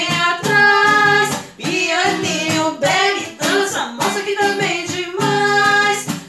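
Two women singing a sertanejo song together in Portuguese, in sung phrases with short breaks between lines, to a strummed acoustic guitar.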